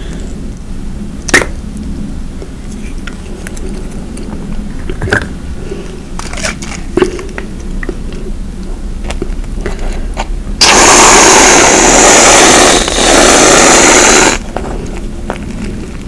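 Aerosol whipped-cream can spraying: a loud hiss lasting nearly four seconds, with a brief break in the middle. Before it come light clicks and taps of the can and croissants being handled.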